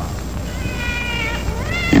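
Baby's cry sound effect: a thin, high wail held for about a second, then a second cry that rises in pitch near the end, over steady radio hiss.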